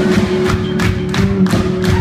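Live ska band playing an instrumental vamp: drum hits in a steady beat, about four a second, over sustained bass and electric guitar, with no vocals.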